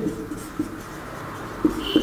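Marker writing on a whiteboard, in short strokes, with a brief high squeak near the end.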